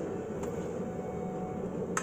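Electric kettle heating water toward the boil, a steady rumbling hiss, with one faint tap about half a second in.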